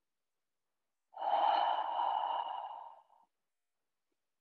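A woman's long audible breath, about two seconds long and fading out, taken while holding a yoga pose. It is the only sound, with silence before and after it.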